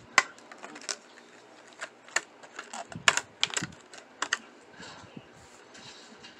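Stiff clear plastic blister and cardboard backing of a die-cast toy car package being pried and torn open by hand: a run of irregular sharp crackles and clicks, loudest about three seconds in.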